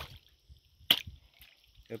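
Faint water dripping and splashing as a speared snook is handled and lifted from the water, with one sharp click about a second in.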